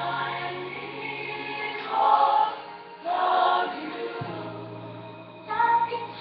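Music with a choir singing, in phrases that swell and fade, loudest about two and three seconds in.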